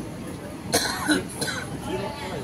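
A person coughing a few times, loud and close to the microphone, just under a second in, over faint background voices.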